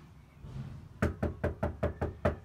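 Rapid knocking on a front door: a quick run of about six sharp knocks, about five a second, starting about a second in.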